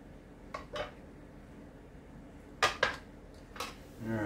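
Metal spoon clinking and knocking against the bowls and pie dish while filling is spooned out: a pair of light clinks about half a second in, a louder pair just past halfway, and one more near the end.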